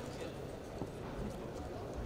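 Background sound of a large sports hall: indistinct voices and a few faint light taps over a steady low hum.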